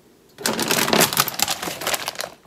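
Plastic snack bag crinkling and rustling as it is handled, a dense run of sharp crackles starting about half a second in.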